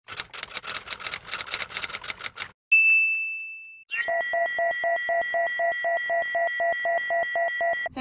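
Typewriter sound effect: a rapid run of key clicks for about two and a half seconds, then a single bell ding that rings out. After that, a steady electronic tone with a pulsing beat of about five pulses a second holds until it cuts off suddenly near the end.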